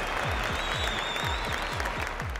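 Crowd applause with a whistle over it, the clapping steady throughout, celebrating a race win, with background music thumping underneath.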